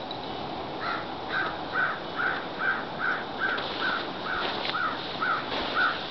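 Cairn terrier yipping in a steady run of short, high, evenly spaced yips, about two a second, starting about a second in, while hunting a critter in the snow.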